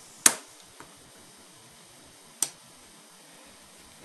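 Two sharp mechanical clicks about two seconds apart, the first much louder, from the control mechanism of a Sharp RD-426U cassette recorder as it is switched into play.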